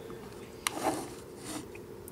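A plastic action figure and its display base being handled: one sharp click about two-thirds of a second in, followed by faint rubbing and scraping.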